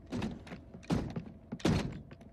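Cartoon robot-to-car transformation sound effect: three quick mechanical clunks in about two seconds as the robot folds into vehicle mode.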